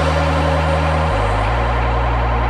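Live band music in a drumless passage: sustained low synth bass notes and held keyboard and synth chords, the bass note changing about a second in.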